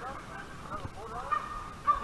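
Faint, drawn-out calls of hog-hunting dogs baying in the distance, with one call held steady from about halfway through.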